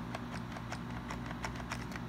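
Light plastic clicking from a Nerf Hyper blaster, in an even run of about five clicks a second, over a faint steady hum.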